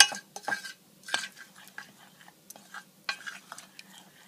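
A spoon stirring a thick creamy mixture in a stainless steel bowl, with irregular knocks and short scrapes against the metal. The loudest knock comes right at the start.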